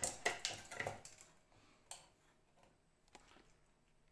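Light clicking and scraping of a thin pick against the plates of an open sandwich maker, picking off bits of toastie stuck to them. The clicks come quickly in the first second, then only a few isolated ticks.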